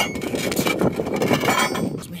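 Wind buffeting a phone's microphone: a loud, uneven low rumble.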